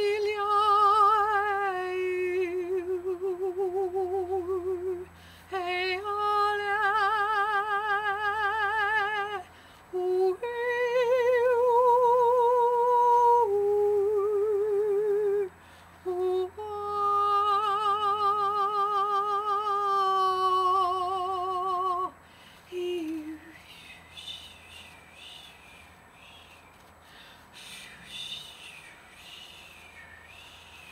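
A woman's voice singing wordless, long held notes with a steady vibrato, several sustained tones in a row with short breaks, improvised as she tunes into a tree; the singing breaks off about 22 seconds in.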